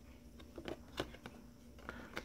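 Faint clicks and soft rustles of glossy trading cards being handled and slid over one another, a few separate ticks spread through the moment.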